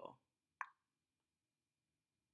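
Near silence, broken by one short, sharp pop about half a second in.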